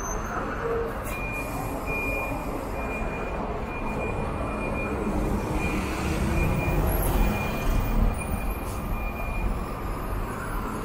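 Diesel city bus engines running, their low rumble building as a bus pulls out about six seconds in. A high electronic beep repeats in short pulses through most of it.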